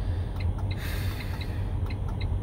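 Steady low hum inside a semi-truck cab, with faint light ticks scattered through it and a soft breathy exhale about a second in.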